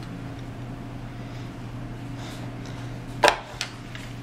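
Plastic Play-Doh tool pieces being handled on a table: one sharp click about three seconds in and a fainter click just after, over a steady low room hum.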